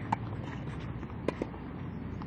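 Tennis ball hits during a rally: a sharp pop just after the start, then a louder pop about a second and a quarter in and a fainter one just after it, over a steady background hiss.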